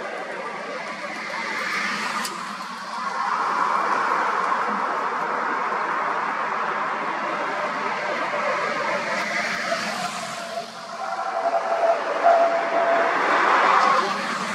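Car and van engines idling and creeping slowly along a road, a steady mechanical noise that grows louder over the last few seconds as a vehicle comes close.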